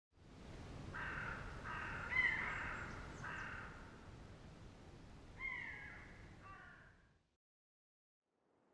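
Faint outdoor nature ambience with a low noise bed, and a bird giving several harsh pitched calls in the first few seconds and another short series of falling calls around five and a half seconds. The whole bed fades out near the end.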